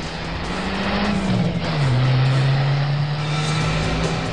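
Vehicle engines running as SUVs speed along the road, under dramatic background music; a low steady tone in the mix drops in pitch about one and a half seconds in.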